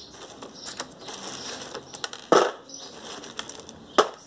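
Pieces of pine bark potting substrate rustling and clattering as a hand scoops them from a plastic basin and drops them into a wooden cachepot, with one loud clatter a little past halfway.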